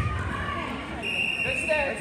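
Indistinct shouting voices from coaches and spectrators in a gym, with a thud right at the start and a high steady tone held for about a second midway.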